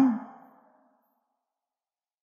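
The last word of a man's speech trailing off into a breathy fade in the first half second, then complete silence.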